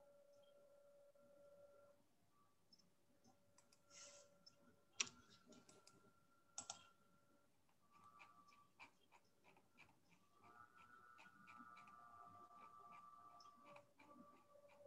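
Near silence, with scattered faint clicks of a computer mouse and keyboard over a faint steady hum.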